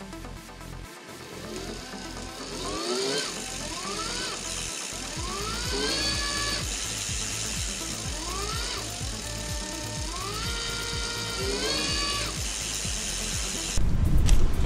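Tongsheng TSDZ2 mid-drive electric motor on an unloaded, upside-down bike, run up by its thumb throttle about half a dozen times: each time its whine rises in pitch, holds, then winds down.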